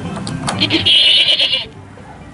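A recorded goat bleat played through the small speaker of a push-button sound box, starting about half a second in and lasting about a second.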